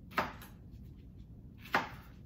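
Chef's knife chopping jalapeño peppers on a cutting board: two sharp strikes about a second and a half apart.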